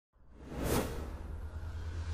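Broadcast intro sound effect for an animated team-matchup graphic: a sweeping whoosh, loudest under a second in, over a steady low rumble.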